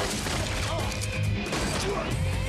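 Action-film soundtrack: music over a pulsing low beat, with crashes and hits from a fight scene.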